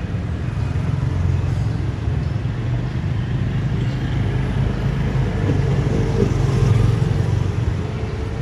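Motor scooter engine running as the rider sets off and pulls away down the street, over a steady low traffic rumble that grows a little louder near the end.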